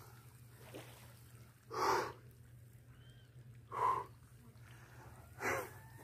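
A man breathing out hard three times, short heavy exhales about two seconds apart, winded after a hard fight with a large pintado catfish on a telescopic pole.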